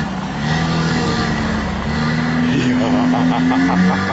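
Car engine running with a steady hum that shifts a little in pitch, over a low rumble.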